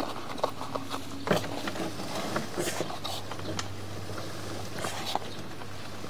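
Sewer inspection camera's push cable being pulled back by hand through the drain line: irregular light clicks and scuffs over a steady low hum.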